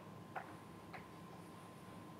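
Chalk writing on a blackboard: two short, sharp taps of the chalk about half a second apart, faint.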